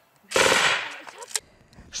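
A short burst of machine-gun fire from a bipod-mounted machine gun, starting suddenly about a third of a second in and dying away by about a second and a half, with one last sharp crack just after a second.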